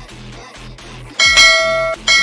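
Background music with sliding bass notes. About a second in, a loud ringing bell chime comes in: the notification-bell sound effect of a subscribe-button animation.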